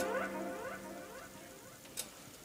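Electric guitar's last notes ringing out and fading away, with a run of short, squeaky rising chirps from the strings; a single click near the end.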